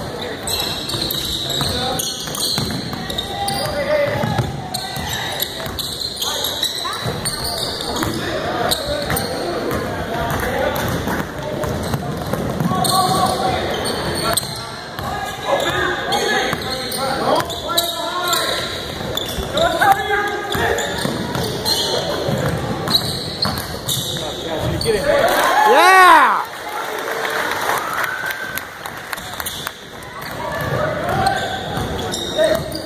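A basketball bouncing on a hardwood gym court during play, with voices of players and spectators in the big hall. About 26 seconds in comes one loud sliding, pitched squeal.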